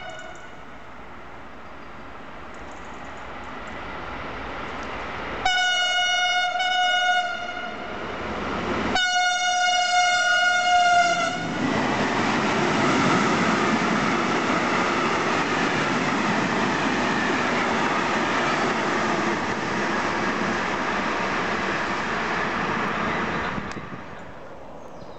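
Electric freight train approaching, its locomotive sounding two long blasts on a single-pitched horn. The train then passes close by, a long steady rush of wagon wheels on the rails.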